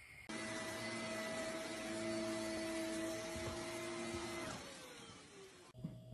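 An electric motor appliance starts suddenly and runs with a steady whirring hum. Near the end it is switched off and winds down, its pitch falling as it slows.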